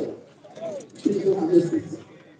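People's voices close by in a crowd, in two short spells, the second longer and fairly level in pitch.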